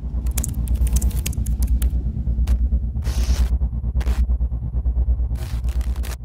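Logo intro sound effect: a loud, fast-pulsing deep bass rumble with glitchy crackles and clicks over it. There are short bursts of static hiss about 2.5 s, 3 s and 4 s in, and another near the end.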